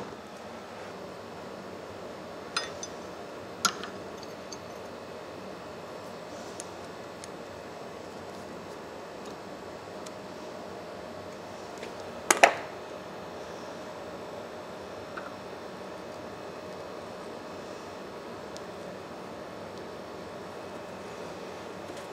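Sharp metal-on-metal clinks of hand tools being handled and set down at a bench vise, a threading die and its die stock among them: two single clinks a few seconds in and a louder double clink about halfway through, over a steady low background hum.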